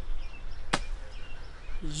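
A pause in a man's outdoor talk, with a low rumble, faint short chirps and one sharp click about three quarters of a second in. The man's voice comes back just before the end.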